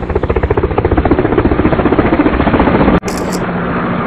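A loud, rapid mechanical beating, about a dozen even pulses a second, which cuts off suddenly about three seconds in and gives way to a lower, steadier hum.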